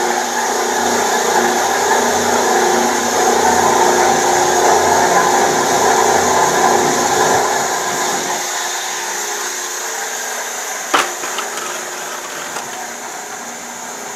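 A ribbon mixer's 10 HP direct-drive motor and heavy-duty gearbox running steadily, turning the stainless ribbon agitator in the empty trough. About eight seconds in, the low part of the sound drops away and the rest slowly fades. There is one sharp click about eleven seconds in.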